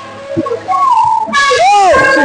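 A woman's voice singing into a microphone. After a brief lull, a loud held phrase comes in about a second and a half in, its pitch rising and falling in a smooth arc.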